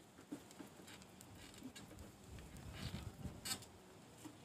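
Faint background ambience with scattered soft clicks and low bumps, a little louder about three seconds in.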